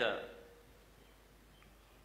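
A man's voice ending a spoken phrase, its echo dying away within about half a second, then a pause of faint room tone with a few faint ticks.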